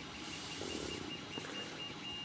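Ballpoint pen drawing a long straight line across a sheet of paper: a faint, steady scratching of pen tip on paper.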